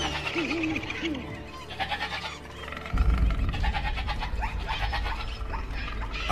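Animal calls in a film soundtrack, then a deep low rumble that comes in suddenly about halfway through and keeps going.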